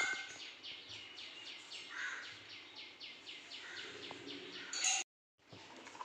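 A bird calling in a rapid, even series of short, high chirps, about four or five a second, cut off abruptly near the end.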